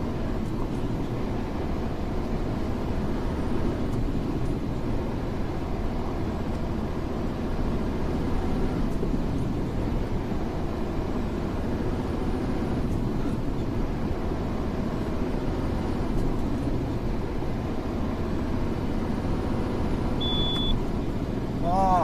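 Steady road and engine noise inside a car's cabin while cruising on an expressway.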